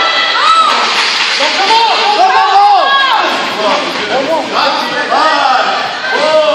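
Several voices shouting encouragement over one another at high pitch, with no clear words coming through.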